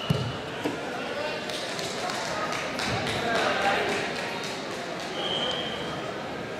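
Several voices talking and calling out in a sports hall, with scattered small knocks. About five seconds in there is a short, steady whistle blast, a wrestling referee's whistle.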